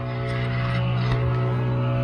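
A steady, low-pitched hum made of several even tones, unchanging throughout.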